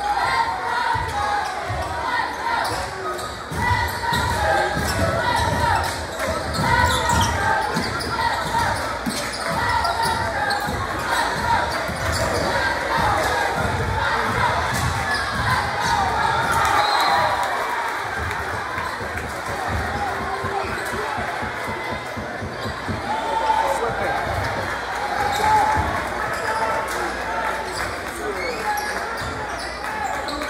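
A basketball being dribbled on a hardwood gym floor, bouncing repeatedly, amid game play. Spectators' voices and shouts fill the gym throughout.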